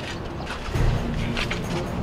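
Background music over the knocks and scrapes of workers handling a storm-drain cover, with a heavy low thump a little under a second in and a few sharp knocks around the middle.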